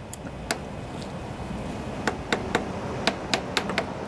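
Sharp metallic clicks from a steel feeler gauge set and the loosened ignition coil as the .012 in blade is worked into the gap between the coil and the flywheel magnets: one click, then a quick run of about eight more.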